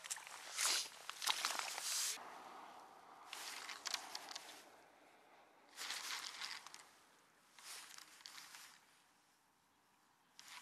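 Several short bursts of rustling, scuffing noise, separated by quieter gaps and fading toward the end, as someone moves about on a grassy shoreline bank.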